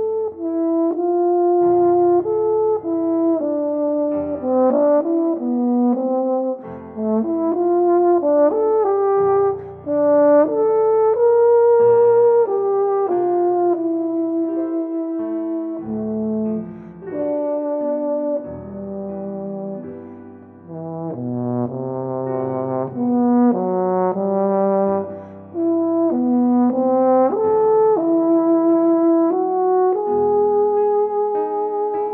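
Euphonium playing a moving, many-noted melodic line over piano accompaniment, with a brief dip in volume about two-thirds of the way through.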